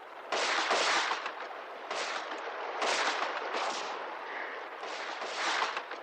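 Scattered gunshots from the enemy's muskets in an audio drama, about seven shots at uneven intervals, each trailing off in an echo.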